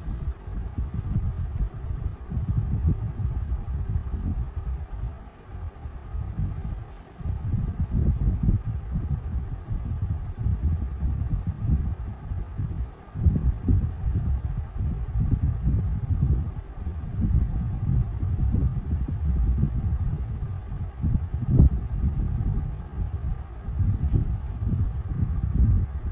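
A low, uneven rumble that swells and fades irregularly, with no clear strokes or rhythm.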